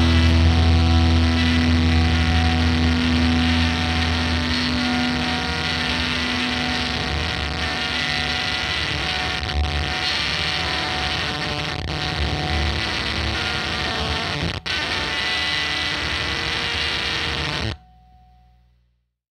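Ending of a rock song: a held, distorted electric-guitar chord fades into a dense wash of effects-laden guitar noise. The noise drops out for an instant once, then cuts off suddenly just before the end, leaving a short fading ring.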